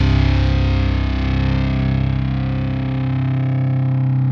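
Metalcore recording: a distorted electric guitar chord held and ringing, its highs slowly fading and the deepest bass dropping away near the end.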